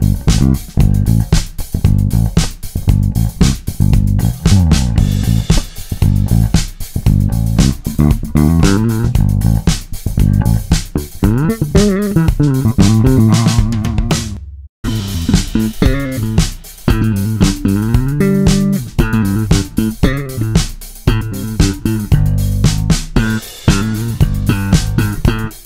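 Lakland Skyline DJ5 five-string passive jazz-style electric bass played fingerstyle: a continuous run of quick plucked notes. The sound cuts out for an instant a little past halfway, then the playing resumes.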